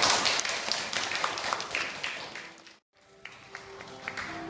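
Guests applauding with many hands clapping, fading out about two and a half seconds in; after a brief dropout, faint sustained tones.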